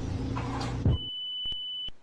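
A loud thump just before a second in, followed by a single high electronic beep held steadily for almost a second, with two sharp clicks across it, cut off suddenly.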